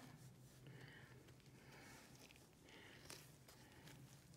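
Near silence: room tone with a faint steady hum and a few very faint soft handling sounds, with one small tick about three seconds in.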